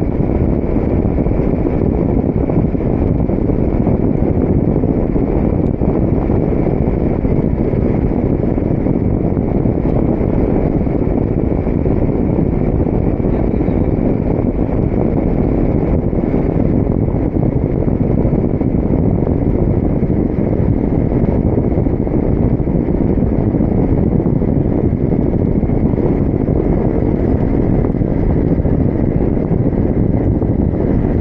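Steady, loud wind noise from air rushing over the microphone of a camera on a paraglider in flight, with a faint high steady tone above it.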